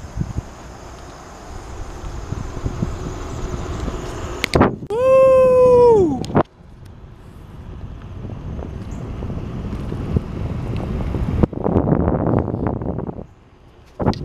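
Wind on the microphone and rolling noise from a bicycle riding along a paved trail, rising to a louder rush near the end. About five seconds in, a loud held whistle-like tone lasts about a second and a half and drops in pitch as it stops.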